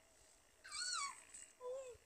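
Asian elephant calling: two short high-pitched calls, the first falling in pitch and the second lower and briefer.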